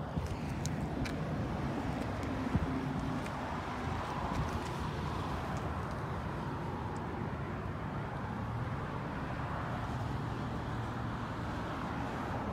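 Steady low rumble of an idling car engine, with a few faint clicks.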